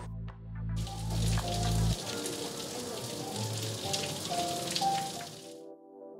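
Outdoor shower running, water spraying and splashing on a tiled floor: it starts about a second in and cuts off sharply near the end. Background music plays underneath.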